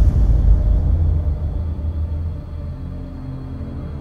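Ominous film score: a deep low boom hits at the start and fades over a couple of seconds into a sustained low drone.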